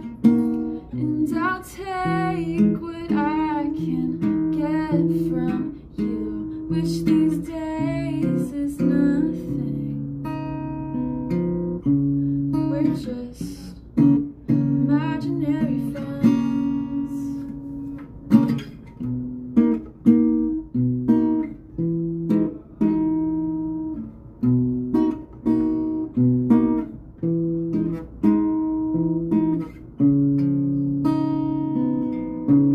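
A woman singing with vibrato to her own strummed and picked acoustic guitar. The singing is strongest in the first third; after that the guitar chords carry on with only short sung lines.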